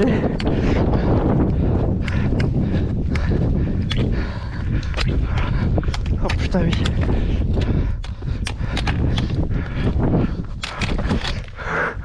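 Trekking pole tips clicking on granite and boots stepping over rocky ground, irregular sharp clicks several times a second over a steady low rumble.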